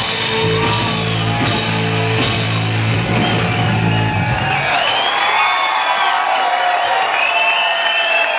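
Live rock band holding the final chord of a song, electric guitar and bass ringing under a few cymbal crashes, cutting off a little past halfway. The audience then cheers and whoops.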